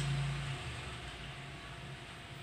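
A man's low, steady hum held through a pause in his speech, fading out about half a second in, then faint room hiss.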